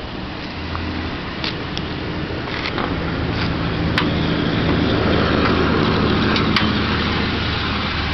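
The 3.0-litre V6 of a 2001 Nissan Maxima idling steadily, growing louder about halfway through as the hood is raised. A few sharp metallic clicks come from the hood latch being released and the hood lifted.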